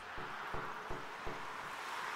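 Steady highway traffic noise: an even hiss of tyres on the road, with a few faint low thumps.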